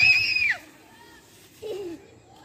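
A child's short high-pitched squeal of about half a second, rising in and falling away, followed by a short low voice near the end.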